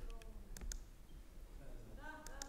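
A few faint, sharp clicks, about four in the first second, over quiet room tone, with a faint murmur of a voice at the very start.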